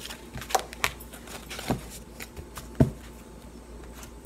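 Tarot cards being handled: a few scattered light clicks and taps as a card is drawn from the deck, the sharpest knock nearly three seconds in.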